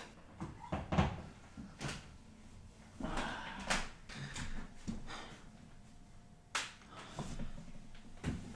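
Scattered light knocks, clicks and rustling of people moving and handling things in a small room; the sharpest knock comes about two thirds of the way through.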